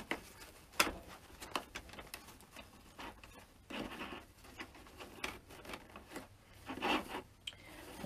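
Ribbon being looped, pinched and pressed into a bow maker by hand: scattered small clicks and taps, with two longer rustles of the ribbon about four and seven seconds in.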